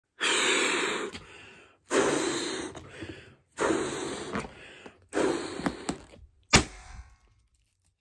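A balloon being blown up by mouth in four long breaths, each a rush of air that fades away. Then it bursts with a sharp pop about six and a half seconds in, the loudest sound.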